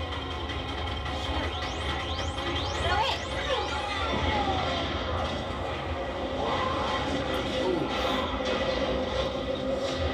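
TV episode soundtrack: score music over a steady low vehicle rumble, with a run of rising whistling sweeps about two to three seconds in.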